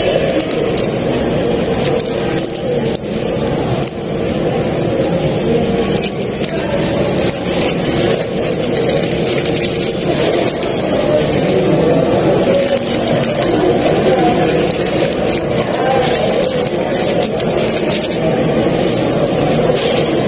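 Plastic packaging crinkling and rustling in the hands, in short crackles, over a loud, steady low rumble and murmur of background noise.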